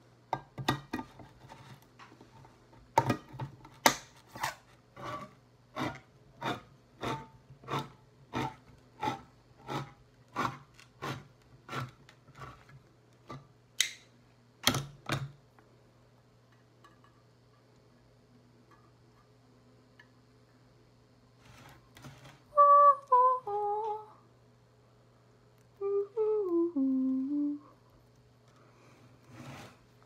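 Hand-cranked can opener clicking about twice a second as it cuts around the lid of a metal food can; the clicking stops about halfway through. Later a woman hums two short phrases that fall in pitch.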